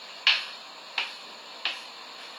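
Footsteps of sandals on a tile floor: three sharp clicks about two-thirds of a second apart, in an even walking rhythm.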